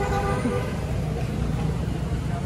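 Steady low rumble of road traffic, with a brief flat-pitched tone lasting about half a second at the start.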